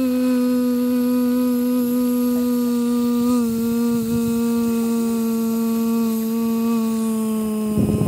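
A person humming one long, loud, steady note that sinks slightly in pitch as it is held.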